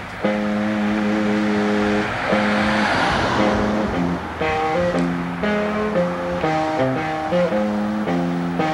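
Guitar music: held chords at first, then a quicker run of changing notes from about four seconds in. A rushing hiss swells and fades around the middle.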